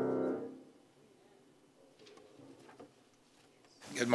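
The last held piano chord dying away within the first second, then near quiet with a few faint clicks, and a man's voice starting right at the end.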